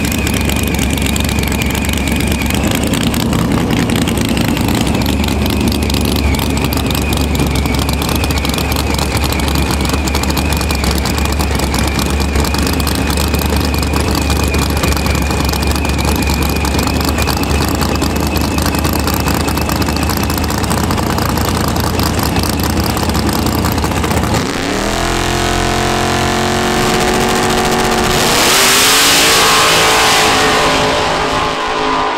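Drag car engines at the starting line running with a deep steady drone and a thin high whine. About 25 seconds in, a launch: the engine pitch climbs sharply, dips once at an upshift and climbs again. A loud rushing noise follows near the end as the cars pull away.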